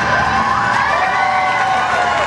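Audience cheering over background music.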